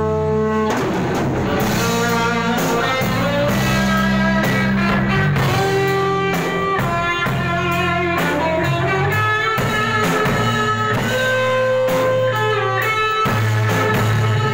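A band playing without vocals: an electric guitar carries a melodic lead line over a Pearl drum kit. A held chord gives way to the drums coming in under a second in.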